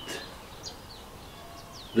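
A few faint, short bird chirps scattered over steady low outdoor background noise.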